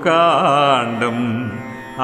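Carnatic-style devotional chant: a singer draws out one long, ornamented note with wavering pitch over the accompaniment, then slides down to a lower held note that fades out near the end.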